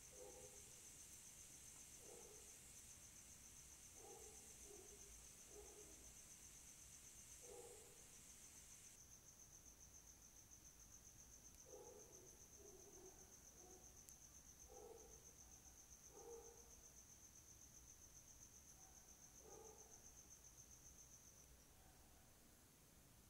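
Near silence: a faint, steady high-pitched whine runs throughout, with a few very faint low murmurs scattered through it.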